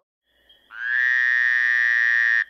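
Logo-intro sound effect: one long, buzzy frog croak at a steady pitch, coming in about two-thirds of a second in after a faint thin tone.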